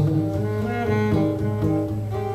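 Live instrumental passage: a bowed cello holds long low notes under a strummed acoustic guitar, with no singing.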